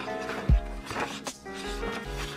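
Background music: a melody of held notes with a low drum hit about half a second in.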